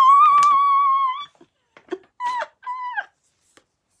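A woman's high-pitched squeal of delighted surprise, held on one steady note for about a second. Then come two short excited exclamations that drop in pitch at the end.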